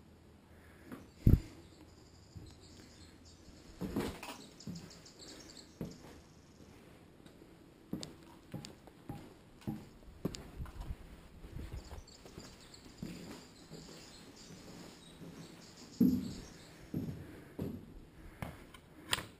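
Footsteps, scuffs and knocks of a person walking and climbing around a concrete and brick bunker with a body-worn camera, irregular and uneven, with a sharp knock about a second in and another loud thump near the end.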